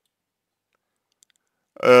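Near silence: a pause in a man's speech, with one faint click partway through, until he starts speaking again in Russian near the end.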